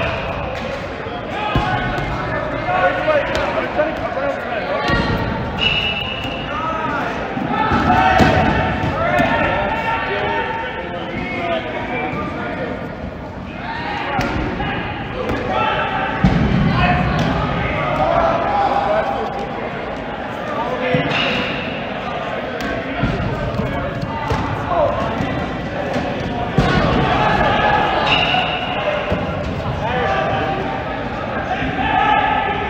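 Dodgeballs bouncing and thudding on a hard gym floor, repeated impacts among many players' overlapping voices and calls, echoing in a large sports hall.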